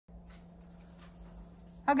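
Faint rustling and sliding of a paper skirt pattern being handled on poster board, over a steady low hum. A woman says "Okay" near the end.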